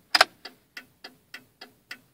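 1995 Cadillac Fleetwood's turn-signal flasher clicking fast, about three to four clicks a second. This rapid flashing is typical of a failing turn-signal bulb or socket. Here the owner finds a dual-filament bulb with one filament not lighting.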